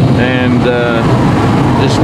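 Steady engine and tyre noise inside a car cabin at highway speed, with a short bit of voice in the first second.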